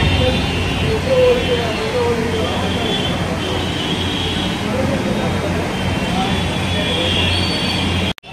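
Steady rumble of a busy street with indistinct voices in the background.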